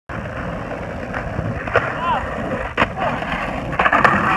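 Skateboard wheels rolling on concrete with a steady rumble, broken by two sharp clacks of the board.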